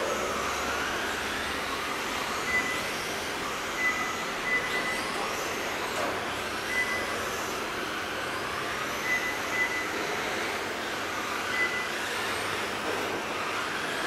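Several Tamiya Challenge GT radio-controlled electric touring cars racing together. Their motors make a continuous whine whose pitch keeps rising and falling as the cars accelerate and brake through the corners. Short high beeps come every second or two, like a lap-timing system counting cars over the line.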